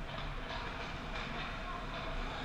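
Ice rink ambience during hockey play: a steady rumbling din with skate blades scraping on the ice, a couple of sharper scrapes about half a second and a second in, and faint distant voices.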